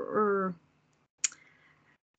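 A trailing spoken 'um', then a single sharp computer-mouse click about a second later, picked up by a video-call microphone.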